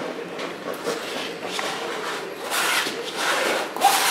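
Palette knife spreading and scraping oil paint across a stretched canvas: a run of rasping strokes, the longest and loudest in the second half.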